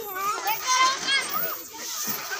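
Young children's high-pitched voices calling out and chattering as they play.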